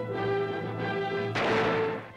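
Dramatic film-score music holding sustained chords, broken about one and a half seconds in by a loud crash that lasts about half a second.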